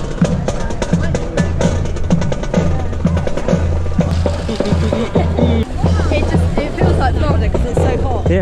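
Uniformed marching band playing a brass-and-drum tune, with a steady bass line and regular drum beats.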